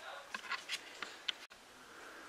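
Faint handling noise: a few light clicks and rustles as fingers turn a small plastic antenna power-inserter box with metal BNC connectors, then a faint room hiss.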